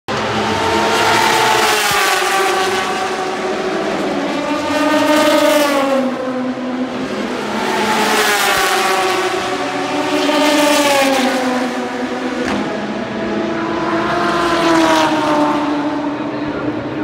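Endurance-racing sports cars passing one after another at full speed, about five in all, each engine note dropping in pitch as the car goes by.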